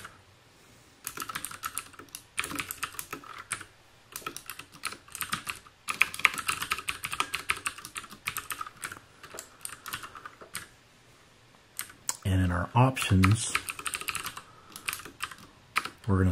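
Computer keyboard typing in quick runs of keystrokes with short pauses between them, as code is entered. A brief bit of voice breaks in about twelve seconds in.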